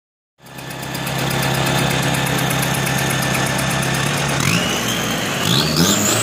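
Drag-racing Isuzu pickup's turbodiesel engine running steadily at the start line, then revving up from about four seconds in, with a high whine rising in pitch as boost builds.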